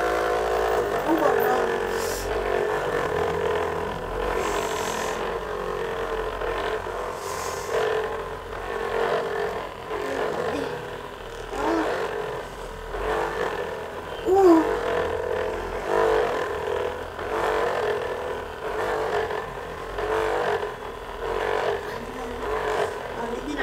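Corded handheld electric massager running with a steady motor hum, its loudness swelling and dipping every second or two as it is pressed against and moved over the body.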